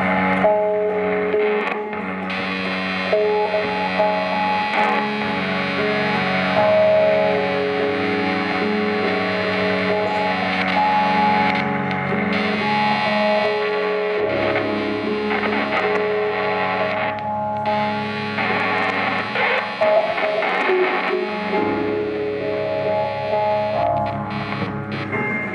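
Distorted electric guitar played live through effects pedals, holding droning, sustained notes that shift in pitch every second or two.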